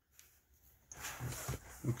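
Hands handling metal camera accessories on a tabletop: a soft rustle with a few light knocks from about a second in, then a man starts to speak at the very end.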